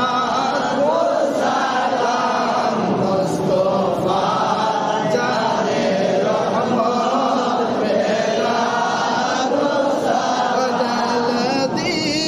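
Men chanting milad devotional verses, led by one male voice, with other voices joining in. The chanting goes on steadily with no break.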